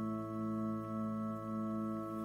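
Church organ holding a steady chord, with one lower-middle note re-struck about twice a second.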